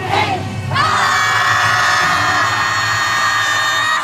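A team of YOSAKOI dancers shouting together: a brief cry, then from about a second in one long unison shout held on a steady pitch.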